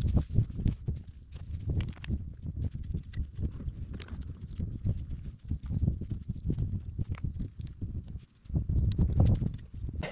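Hand trowel digging into mulched garden soil as seedlings are planted: an irregular run of soft thuds, scrapes and rustles, with a few sharper clicks.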